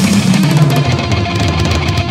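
Yamaha electronic practice drum kit played hard and fast, its module sounds tuned like a 1980s rock studio kit, over a drumless hard-rock backing track with electric guitar.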